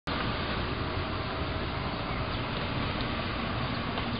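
Steady outdoor street noise, a continuous rumble and hiss with uneven low buffeting from wind on the microphone.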